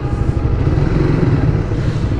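Suzuki GSX-R150's single-cylinder engine running steadily at low revs.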